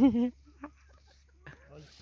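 Chickens clucking faintly, after one short, loud voiced sound with a rising pitch right at the start.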